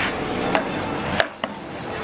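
Hockey sticks clacking in a casual game: a few sharp knocks, about half a second in and two close together after a second, over steady outdoor background noise.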